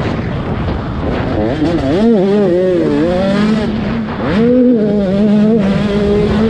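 85cc two-stroke motocross bike engine running hard, its pitch rising and falling with the throttle, dropping briefly about four seconds in, then sweeping up and holding a steady high rev near the end. A rough rushing of wind on the microphone runs underneath.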